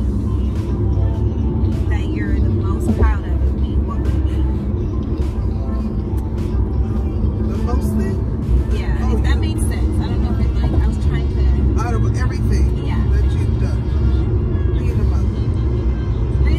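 Steady low road and engine noise inside a moving car's cabin, with music and a singing voice playing over it.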